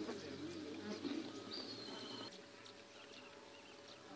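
Faint bird calls: a low wavering call in the first second, then a short, high, steady whistled note about a second and a half in, after which it goes quieter.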